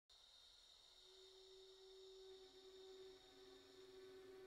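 Near silence with faint steady pure tones: a high one throughout, and a low one that comes in about a second in, joined by a second low tone later.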